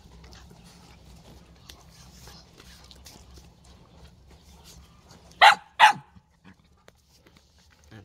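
A dog barks twice, two short barks about half a second apart a little over five seconds in, over faint background otherwise.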